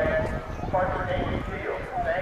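A voice making an announcement over a public-address loudspeaker, talking in short phrases.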